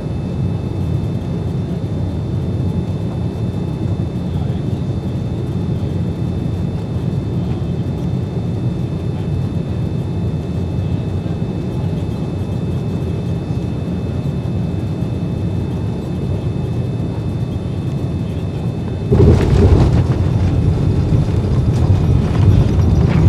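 Steady roar of a Boeing 787-9 airliner's cabin on final approach, heard from inside the cabin. About three-quarters of the way through, it turns suddenly louder and rougher as the aircraft touches down on the runway.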